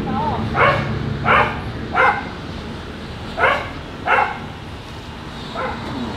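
A dog barking: six short single barks, three in quick succession, then two, then one near the end.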